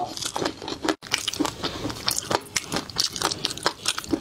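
Close-up eating sounds of crispy flying fish roe being chewed: a dense run of small crisp crunches and pops. A brief cut to silence about a second in.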